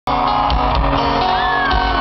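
Live country-rock band playing loud through an arena sound system, heard from the crowd with a voice shouting over it. The music cuts in suddenly at the start. A long gliding note runs high over sustained chords.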